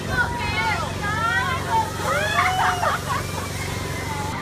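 High, sweeping voices shouting and screaming, typical of riders on a spinning amusement tower ride, over a steady low hum.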